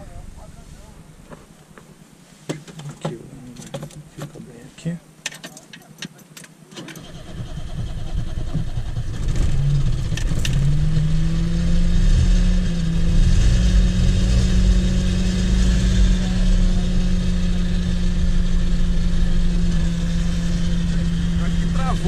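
A few small clicks and knocks, then about seven seconds in the Chevrolet Chevette's 1.6 four-cylinder carbureted engine cranks and starts, settling into a steady idle. The carburetor has freshly corrected jets and needle.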